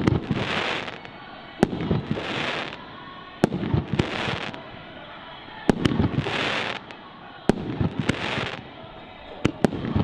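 Aerial fireworks bursting overhead: sharp bangs about every one and a half to two seconds, some coming in quick pairs, each followed by about a second of hiss.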